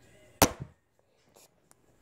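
A single sharp clack from the metal fidget spinner being handled and shaken close to the phone, about half a second in, followed by a couple of faint ticks.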